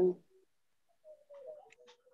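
A bird cooing faintly in the background, a low steady call that starts about a second in, with a few light clicks.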